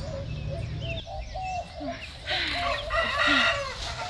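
A rooster crows one long call about two seconds in, among short clucking notes from chickens.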